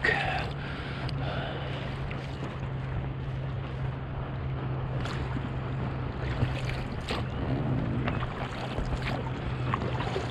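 A boat motor hums steadily at a low pitch, with a few small splashes of water against an inflatable dinghy's hull.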